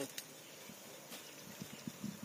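Faint handling sounds of a thorny weed being pulled from the soil with pliers: two sharp clicks and a few soft knocks near the end.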